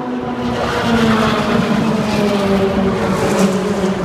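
A race car going past at speed down the straight, its engine running loud and steady with a note that falls slowly as it goes by.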